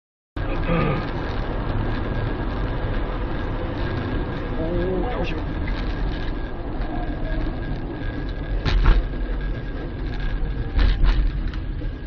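Road and engine noise of a car at highway speed, heard from inside the cabin through a dashcam microphone, with a faint steady whine. A few sharp knocks stand out, once about nine seconds in and several around eleven seconds.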